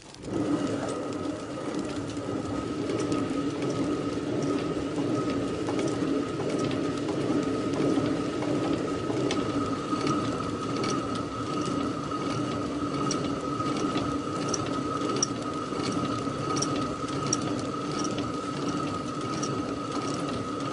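Millstones grinding grain: a steady gritty grinding with a constant hum and dense fine crackling, beginning abruptly.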